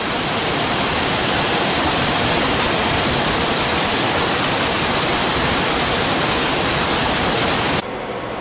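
Steady rush of water in a dissolved air flotation (DAF) basin during a sludge skim, as the raised water level carries the floated sludge over the trough wall to waste. It cuts off suddenly near the end.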